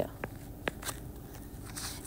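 Stylus tapping and drawing on an iPad's glass screen: a few short, sharp clicks in the first second as parentheses are written.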